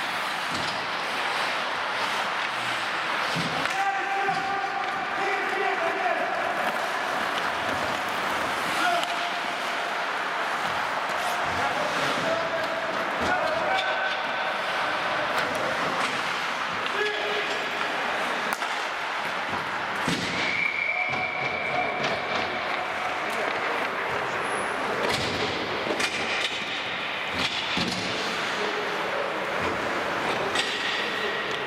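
Ice hockey play in an indoor rink: skates scraping the ice, sticks and puck clacking, and players shouting to each other, with a steady echoing hall sound under it.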